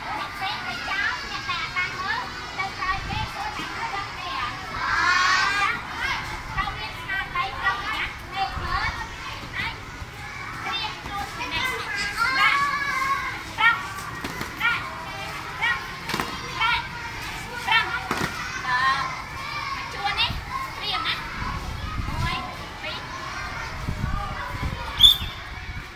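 A group of young children's voices chattering and calling out at once, overlapping throughout, with a few short sharp knocks in the second half.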